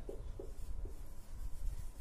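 Marker pen writing on a whiteboard, a few faint short strokes.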